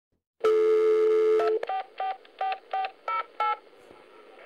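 A steady telephone tone for about a second, then six quick touch-tone (DTMF) dialing beeps, evenly spaced.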